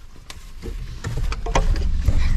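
Low steady rumble inside a truck cab, with several short clicks and rustles scattered through it.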